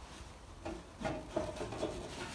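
Light knocks and rubbing of the lathe's back cover as it is lifted off and handled, a few short knocks in the second half, some with a brief metallic ring.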